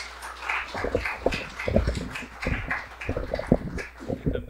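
Irregular dull thumps and knocks of a podium microphone being handled and adjusted, starting about a second in, over faint room noise.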